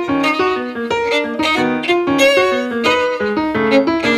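Violin and piano playing an instrumental piece together in quick, detached notes.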